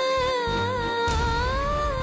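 A woman's voice holding one long, high, wavering note over a low music bed. The note dips slightly and rises again before cutting off at the very end.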